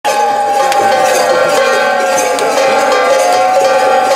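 Bells ringing continuously in a ritual, a steady ringing tone with a few sharper strikes mixed in.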